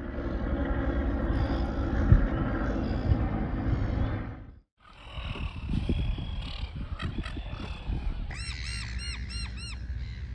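Outdoor ambience with low wind rumble on the microphone and gulls squawking. The sound drops out suddenly a little before halfway. Near the end a gull gives a rapid string of about six calls.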